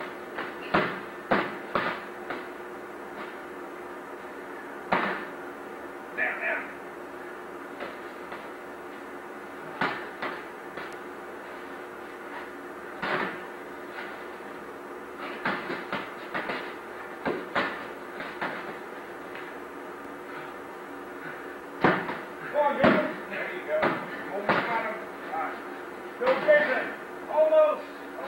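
Padded foam sparring sticks striking each other in a bout: irregular dull knocks in short flurries, busiest near the end.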